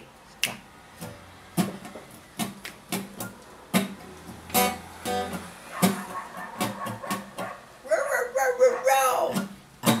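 Guitar strummed with sharp, regular strokes, about two a second, as the instrumental intro of a rock song.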